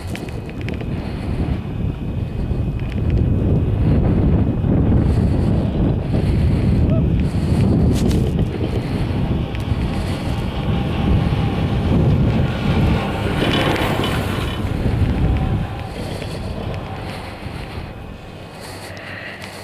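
Wind buffeting the microphone of a camera on a moving chairlift: a heavy, noisy low rumble that strengthens a few seconds in and eases noticeably near the end.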